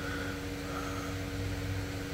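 Steady background machine hum with two faint steady tones and no change over the pause.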